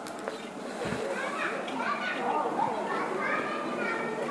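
Overlapping voices of several people talking at a gathering, including high-pitched voices.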